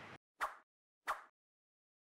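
Two short, sharp sound-effect hits from an outro end-card animation, about two-thirds of a second apart, each fading quickly, with dead silence between and after.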